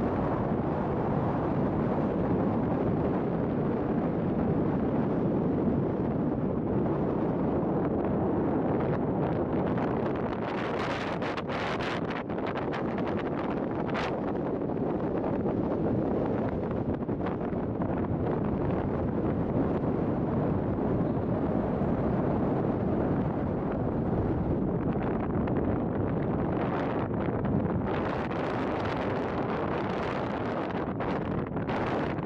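Steady wind buffeting the microphone, heaviest in the low range, with a few brief clicks about 11 seconds in.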